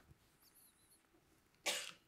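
Near silence in a lecture room, then, near the end, one short, sharp burst of breath from a person that fades quickly.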